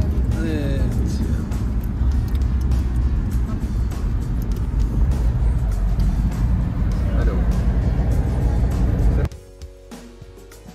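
Road and engine rumble inside a moving car's cabin at highway speed, with brief voices, cut off abruptly about nine seconds in and replaced by quieter background music.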